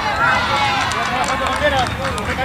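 Several voices shouting and calling over one another across a football pitch during play, many of them high-pitched children's voices.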